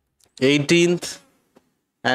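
Speech only: a man's voice in one short utterance of about a second.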